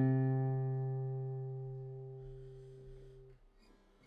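Background guitar music: one plucked note rings and slowly dies away, fading out about three and a half seconds in.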